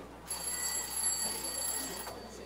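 A high-pitched electric ringing that starts a moment in and holds steady for about a second and a half.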